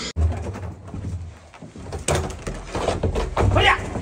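Pigs grunting, short repeated grunts that come more often in the second half, over a low rumble.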